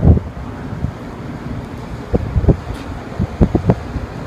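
Wind buffeting the phone's microphone: a steady low rumble with several short, sharper gusts in the second half.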